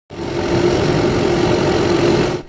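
Farm tractor engine running steadily under load as the tractor drives across a tilled field, a constant drone with a steady hum.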